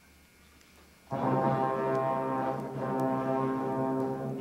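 School concert band coming in together after a short rest: a loud full-band chord enters suddenly about a second in and is held, with trumpets and clarinets sounding and the harmony shifting to new notes near the end.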